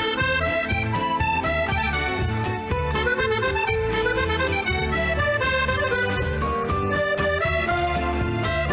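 Chromatic button accordion playing a lively paso doble melody over a band backing with a steady bass line and drum beat.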